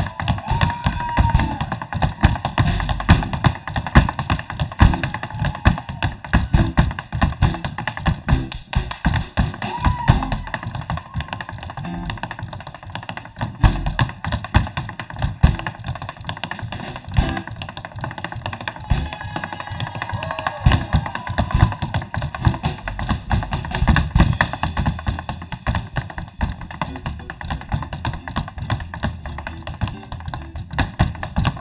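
Tap dancing: metal-tipped tap shoes striking a stage floor in a rapid, continuous, irregular stream of taps and stamps.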